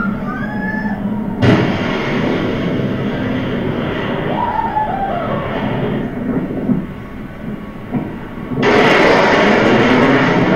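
Low-quality playback of a film of a jet's supersonic pass: a sharp boom about a second and a half in, then a steady rushing noise, and a loud rush of jet noise again near the end.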